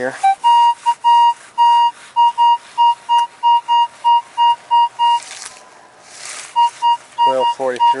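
Minelab CTX 3030 metal detector giving a really high pitched target signal: short repeated beeps of one steady tone, about three a second, that break off for about a second and a half after five seconds and then resume. It is the signal of a buried silver dime about three inches down.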